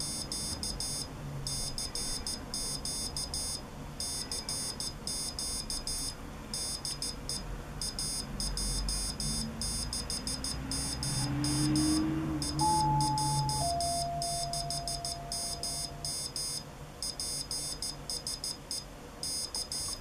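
Piezo buzzer on a homemade electronic Morse keyer sending a stored message in Morse code: a high-pitched beep keyed in dots and dashes throughout. Midway a low rumble swells and fades, with a short clear tone that steps down in pitch.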